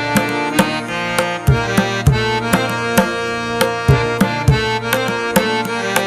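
Instrumental background music: recurring percussion hits with a deep bass under held melodic notes.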